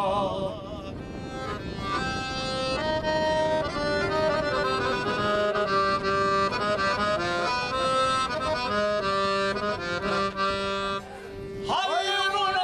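Piano accordion playing a melody on its own in held, stepping notes over a steady low accompaniment, between sung verses. A man's singing voice fades out just after the start and comes back in near the end.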